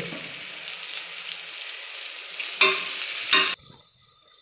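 Onions, green chillies and whole spices sizzling in hot oil in an aluminium pressure cooker, with two loud stirring strokes about two and a half and three and a quarter seconds in. The sizzle cuts off suddenly just before the end.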